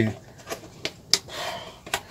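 A small tub of iron oxide powder and its lid being handled and set down: a few light clicks and knocks, with a short scraping rustle in the middle.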